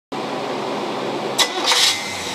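Engine running steadily on a Rochester Quadrajet four-barrel marine carburetor. A sharp click comes about one and a half seconds in, followed by a short, louder hiss near the end.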